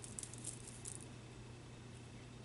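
Faint rubbing and small ticks of a fingertip rubbed hard over the skin of the wrist, fading out about a second in, leaving only a steady low hum.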